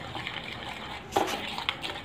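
Ghee and powdered sugar being beaten by hand in a bowl: a steady wet swishing and scraping, with a couple of sharper knocks a little past a second in.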